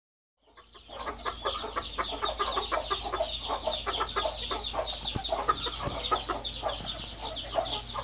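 Old English Game bantams clucking and chattering, with many short high calls overlapping in a fast, dense run, several a second, over a low steady hum. The sound fades in about half a second in.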